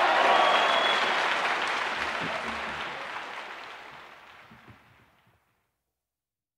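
Audience applause after a live jazz performance, starting loud and fading out steadily over about five seconds.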